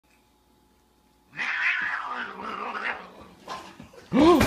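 A domestic cat hissing and yowling in an aggressive face-off, starting about a second in and tapering off into shorter bursts.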